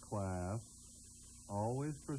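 A man's voice making two short held vocal sounds, each about half a second long, one near the start and one near the end. Underneath runs a steady hum and a high-pitched whine from the worn VHS tape.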